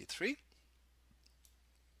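A brief spoken phrase, then quiet room tone with faint computer-mouse clicks as a window is dragged aside on screen.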